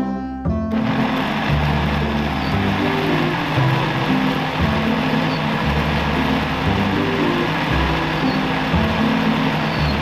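Countertop blender motor running at full speed, puréeing boiled tomatoes, chilies and garlic with a little water into smooth sauce; it switches on just under a second in. Background music with a low bass line plays under it.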